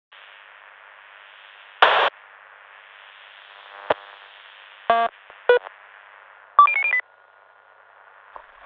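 Walkie-talkie sound effects played through a tinny, narrow-band speaker simulation: radio static hiss with a short loud squelch burst about two seconds in, a click, then two short beeps. A quick run of alternating beep tones near the end closes it as the static cuts off.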